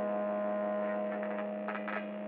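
A steady humming drone of several held tones, slowly fading, with faint short clicks joining from about a second in.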